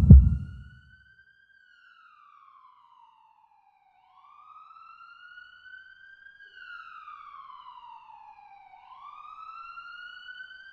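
A deep boom dies away in the first second, then a faint siren wails, its pitch rising quickly and falling slowly about every four and a half seconds.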